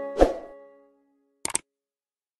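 Sound effects from a subscribe-button animation: as background music cuts off, a sudden pop a quarter second in fades out quickly. About a second and a half in there is a quick double mouse click.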